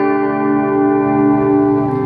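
Fender Telecaster electric guitar with one strummed chord left ringing and sustaining evenly, the chord shifting slightly near the end.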